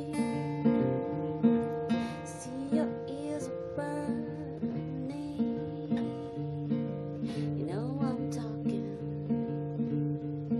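Acoustic guitar playing a steady, evenly repeating strummed pattern in an instrumental passage of a song, with a brief rising swoop near eight seconds in.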